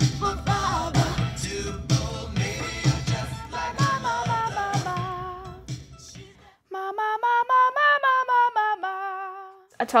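Music with a steady beat and a sung vocal line, fading out about two-thirds of the way through. Then a woman sings a quick unaccompanied run of notes that climbs and falls back.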